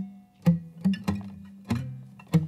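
Acoustic guitar picked on its low strings: about four single bass notes, each struck with a sharp click and left to ring, demonstrating the tic-tac bass sound.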